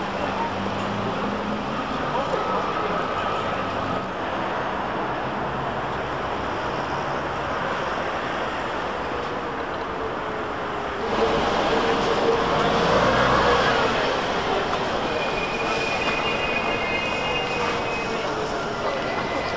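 City street sound of passers-by talking and traffic, with a Metrolink T68 tram approaching the stop. Its motor whine slides in pitch and the sound grows louder about two-thirds of the way through.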